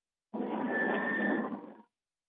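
A burst of rough noise lasting about a second and a half, with a faint high whistle in its middle, heard through a narrowband phone or video-call line.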